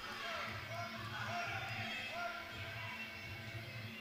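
Muay Thai ring music (sarama): a steady drumbeat under a wavering, gliding reed-pipe melody, with crowd voices murmuring in the hall.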